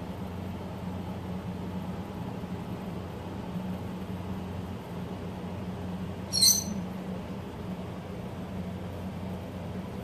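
Steady low hum of room noise, with one brief, sharp crackling noise about six and a half seconds in.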